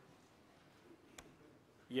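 A pause in a man's speaking: faint room tone with a single short click a little past a second in, then his voice starting again at the very end.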